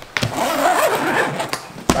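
Zipper of a new Tourit soft-pack cooler being pulled open for the first time, a continuous rasp lasting about a second and a half, followed by one sharp click near the end as the lid comes free.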